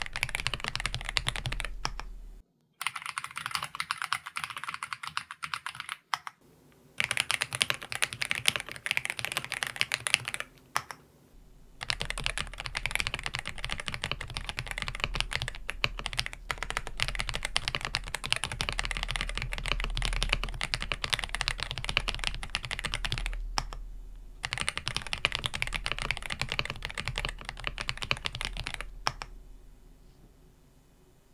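Fast touch-typing on an Aula F87 Pro mechanical keyboard with stock LEOBOG GrayWood V4 linear switches, PBT keycaps and a PC plate, heard through a dynamic microphone: a clean, clear run of keystrokes that stops for short breaks a few times and dies away just before the end.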